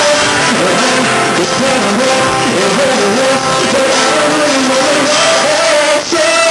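Live solo performance: a man singing a pop song while strumming an acoustic guitar, loud and continuous.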